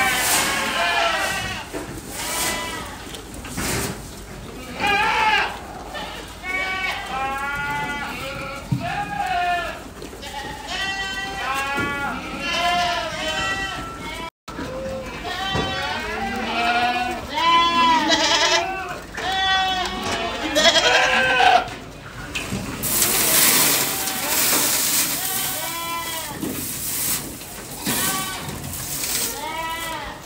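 A flock of Aradi goats bleating over and over, many short, quavering calls overlapping. A rushing hiss joins in for the last several seconds.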